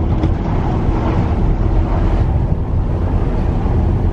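Steady low rumble of a car's tyre and engine noise, heard from inside the cabin while driving, with a faint steady hum running through it.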